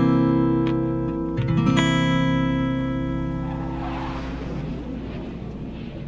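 Acoustic guitar with a C7 chord (x32310) ringing, strummed again about two seconds in, then slowly fading.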